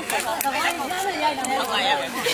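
Several people talking at once, overlapping voices of players and onlookers chattering.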